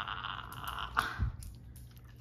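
A Basenji taking a piece of raw cucumber and crunching it, with a sharp click about a second in and a dull thump just after.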